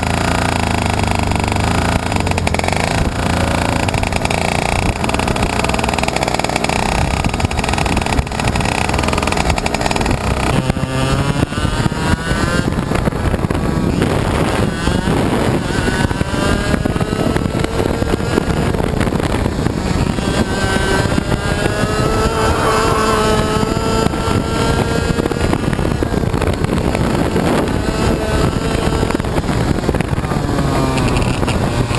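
A 125cc, 30 hp two-stroke kart engine heard from on board. It holds a fairly steady drone for the first ten seconds or so, then revs up and drops back again and again at racing speed.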